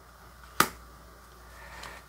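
A single sharp click about half a second in, from trading cards being handled over a tabletop; otherwise only a low room background.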